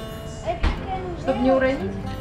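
Indistinct voices talking over background music, with one brief low thump about half a second in.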